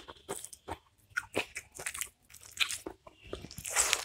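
Close-miked eating with the hand: crunchy chewing and biting as a series of short sharp clicks and crackles, with a louder, longer stretch near the end.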